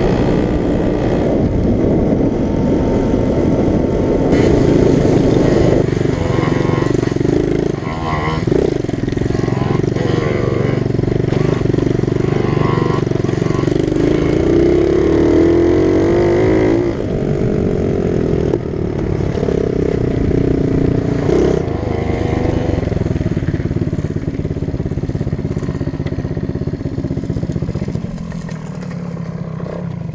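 Small mini motorcycle engine running under way, its note rising and falling repeatedly as the throttle opens and closes, then easing off near the end as the bike slows.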